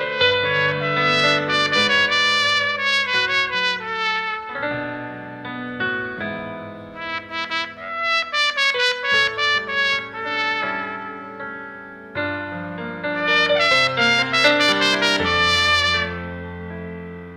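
Trumpet playing a melody in three phrases of quick running notes, with short breaks about five and twelve seconds in.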